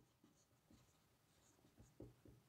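Near silence, with faint strokes of a marker pen writing on a whiteboard.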